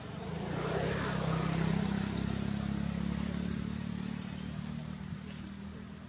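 A motor vehicle's engine passing by: a low hum that swells over the first two seconds and then slowly fades.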